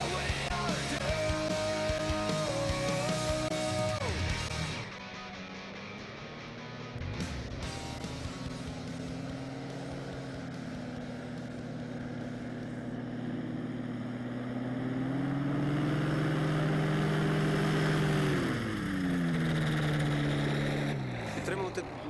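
Rock music for the first few seconds, cutting off abruptly; then the small engine of a powered paraglider (paramotor) running steadily, growing louder past the middle, and falling in pitch near the end.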